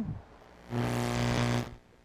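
A loud electrical buzz, a steady mains-type hum with hiss, cuts in about two-thirds of a second in and cuts off a second later. It is a stray buzz in the studio setup whose source is being traced, and the fan has been ruled out.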